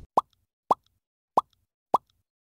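Four short pop sound effects, each a quick upward 'bloop' in pitch, spaced about half a second apart with silence between, as on-screen words pop in.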